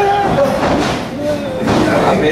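Spectators' voices talking and chattering, with no words clear enough to make out.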